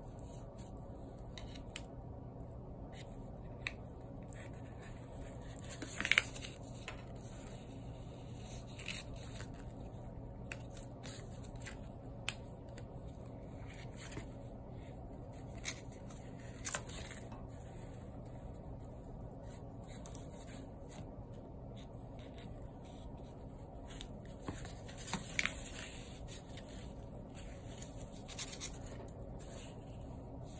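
Yarn and a plastic weaving needle rubbing and scraping against a cardboard loom as hands weave, with small scattered clicks and a few louder brief rustles about six, seventeen and twenty-five seconds in, over a faint steady hum.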